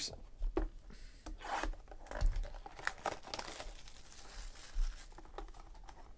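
Plastic shrink wrap crinkling and tearing as it is peeled off a sealed cardboard box of trading cards, with irregular taps and clicks of the box being handled.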